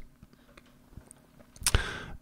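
Computer clicks at a desk: a few faint ticks, then one sharp click near the end as the web browser is opened.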